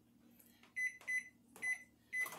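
Microwave oven keypad beeping as the cooking time is entered: three short, single-pitched beeps about a third to half a second apart.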